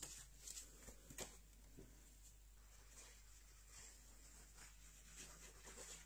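Near silence, with a few faint taps and rustles from sheets of card stock being handled.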